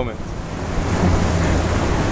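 Wind noise on the microphone and water washing along the hull, over the steady low rumble of the boat's twin Mercury 450 outboards running at low speed.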